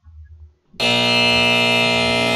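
Buzzer sound effect played back from the computer: a loud, steady buzzing tone rich in overtones that comes in sharply about three-quarters of a second in and holds level. It is the time's-up signal for a slide timer.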